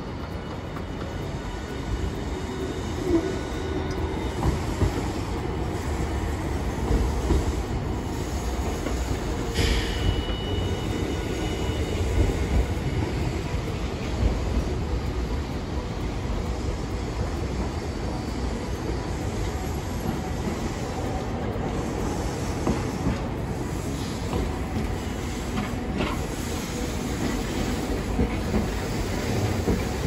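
Hiroden (Hiroshima Electric Railway) streetcars running on street tracks amid city road traffic: a steady low rumble with occasional clanks, and a short high squeal about ten seconds in.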